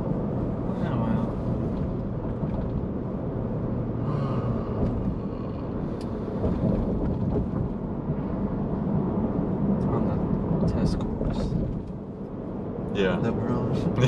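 Steady low rumble of a Whipple-supercharged 2021 Ford F-150 cruising, heard inside the cab: engine and road noise at an even level.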